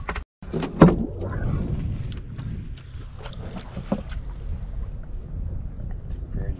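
Wind buffeting the microphone over open water: a steady low rumble, with a sharp knock about a second in.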